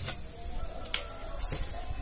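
A garden hoe chopping into weedy ground: three sharp strikes about half a second to a second apart. Under them runs a steady high-pitched insect drone.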